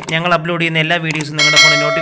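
A bright notification-bell chime sound effect, struck about one and a half seconds in and ringing on, over continuous speech.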